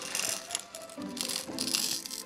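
Background music with a simple melody, over small beads rattling into a plastic bead tray as they are tipped out of a plastic bag, in three short spells: near the start and twice near the end.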